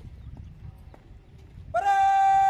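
Low outdoor rumble, then near the end a loud, drawn-out shouted parade drill command begins: one long held call that rises into a steady pitch.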